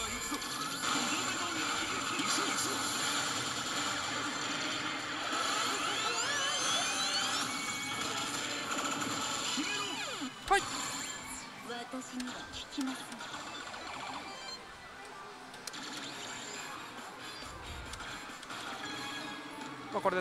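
L Kaguya-sama: Love Is War pachislot machine playing its battle music, character voice clips and effects during the final-blow judgment that decides whether the bonus chain continues, with a loud crash about ten and a half seconds in and quieter game sounds after it. The noise of the pachislot hall runs underneath.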